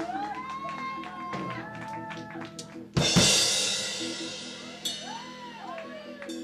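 Live rock band playing a quieter passage: held organ chords, bass, guitar and light drums, with one loud cymbal crash about three seconds in that rings out slowly.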